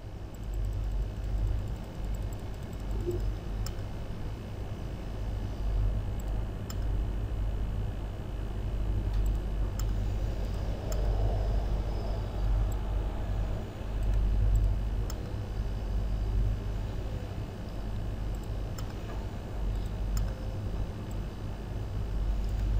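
Steady low hum of background noise, with a few faint, scattered computer mouse clicks.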